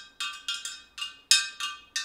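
A metal spoon struck quickly and repeatedly against the inside of a large glass jar, rung like a dinner bell. It makes about four sharp, ringing clinks a second that die away quickly.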